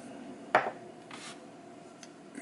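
A single sharp click about half a second in, as the gold-plated IM Corona Magie pipe lighter is set down on a wooden table, followed by a faint brief rub.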